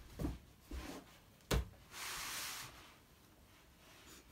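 Soft thumps of a foam yoga block and hands and knees on a carpeted floor, with a sharper knock about a second and a half in. This is followed by a rustle of about half a second as the legs slide out into a side split on the carpet.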